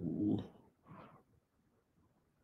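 A man's voice holding the vowel of a drawn-out "so" for about half a second, then stopping. A faint, brief sound follows about a second in.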